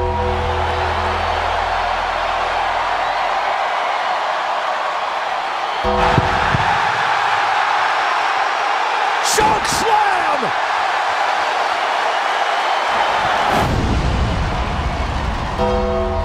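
Dramatic sound effects: a deep bell tolls at the start, again about six seconds in, and once more at the end, each toll ringing on and fading. A steady rushing noise runs underneath, broken by two sharp cracks about nine and a half seconds in.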